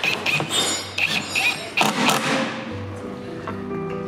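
Battery cordless drill-driver running in short, irregular bursts as it drives screws into a wooden crate lid. Soft piano music comes in near the end.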